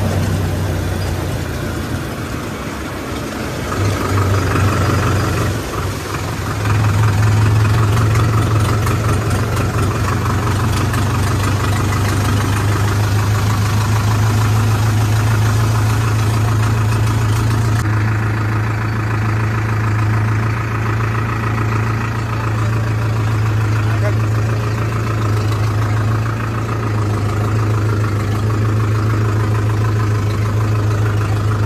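Powertrac tractor's diesel engine running steadily under way. It eases off for a few seconds about two to six seconds in, then picks up again and holds.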